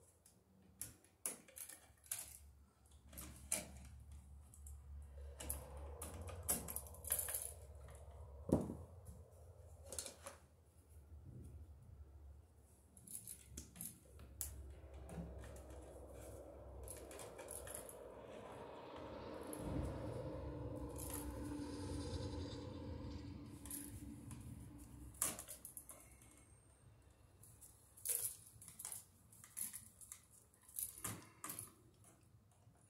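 Scattered small clicks, taps and rattles of stiff electrical wire and a hand tool being worked into a plastic electrical box. About two thirds of the way through, a steadier noise swells and fades over several seconds.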